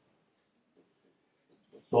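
Near silence: faint room tone, with a man's voice starting just before the end.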